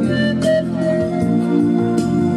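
Andean panpipes playing a melody, a few short notes stepping upward and then a held note, over a backing track of sustained keyboard chords.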